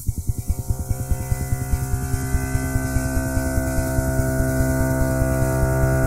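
Synthesizer music from a Korg Kronos workstation: a sustained chord swells in, growing steadily louder over a fast pulsing bass.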